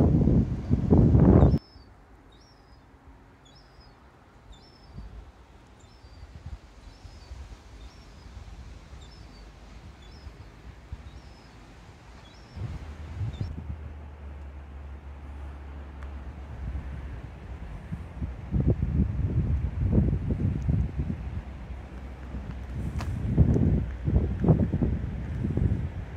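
Outdoor walk ambience: a small bird repeats a short high chirp about once a second for roughly ten seconds, over faint background noise. Wind rumbles on the microphone at the very start and again through the second half, in gusts that grow toward the end.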